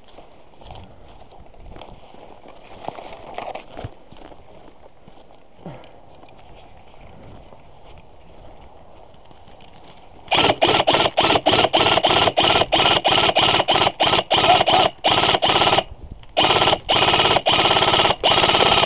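Systema PTW airsoft rifle firing close to the microphone: a rapid string of shots, about three a second, each with a short motor whine. They start about ten seconds in, after faint rustling, and break off briefly near 16 s before resuming.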